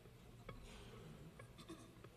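Near silence: church room tone with a low hum, broken by a few faint clicks and rustles from the seated congregation.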